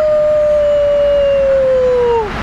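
A child's voice holding one long "woo" on a single note, its pitch sinking slowly, over the steady low rumble of the car.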